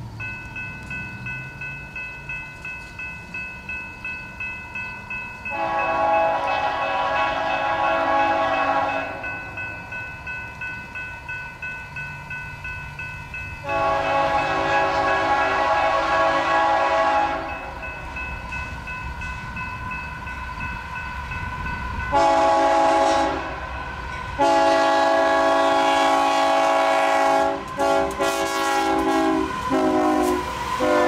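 Union Pacific freight locomotive's multi-chime air horn sounding the grade-crossing pattern: two long blasts, a short one, then a long final blast with brief breaks near the end. Between and under the blasts a crossing-signal bell rings steadily.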